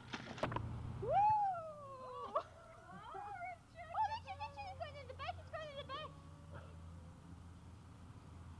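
A series of high, wavering cries: one long cry that rises and then slowly falls, then several shorter bending ones, over a steady low tape hum.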